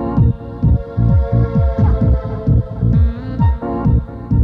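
Electronic dance music from a DJ set: a steady four-on-the-floor kick drum, about two beats a second, with deep bass under held synth chords.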